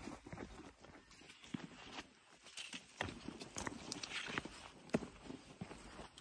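Footsteps on a wooden boardwalk: faint, uneven knocks of shoes on weathered planks during a downhill walk.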